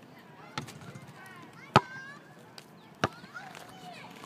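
A basketball hitting hard three times, about a second apart, as a shot comes off the hoop and the ball bounces on the asphalt court; the middle hit is the loudest.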